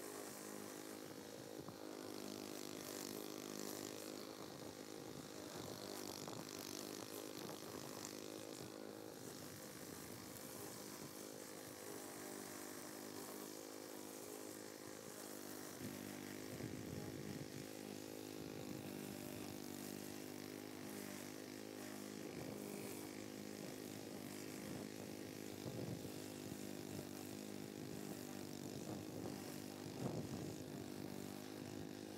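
Walk-behind gas lawn mower engine running steadily while mowing tall grass, heard faintly.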